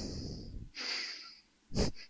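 Close-miked sniffing into the microphone: two long sniffs, then a short sharp one near the end, the start of a run of quick sniffs.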